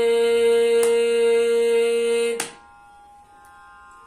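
A young male Carnatic vocalist holds the long closing note of a kriti in raga Vasantha, steady in pitch. It cuts off abruptly with a click about two and a half seconds in, leaving a faint steady drone.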